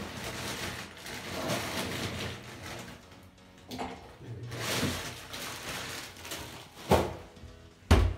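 A plastic bag of ice crinkling and rustling as ice cubes are taken out for a blender cup, with two sharp knocks near the end.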